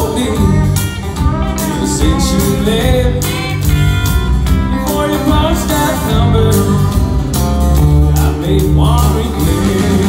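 Live country band playing: electric and acoustic guitars, bass and drums with a male singer, a full steady sound heard from the audience seats of a theatre.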